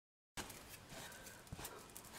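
Complete silence, then faint handling noise from about a third of the way in: a few soft clicks and rustles as hands move a lace-trimmed craft wall plaque.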